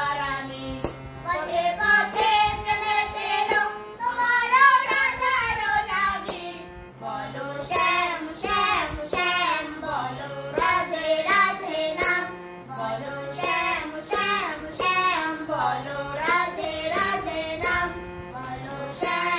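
A woman and a young girl singing a Bengali Krishna bhajan together to a harmonium, its low held notes sounding under the voices. A steady beat of sharp clicks keeps time throughout.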